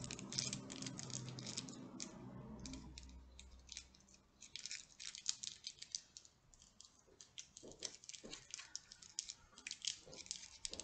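Small plastic packaging being handled and opened by hand: a run of light clicks and crinkles that comes and goes.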